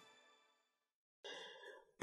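Near silence: the tail of theme music fades away, then a short faint breath a little over a second in.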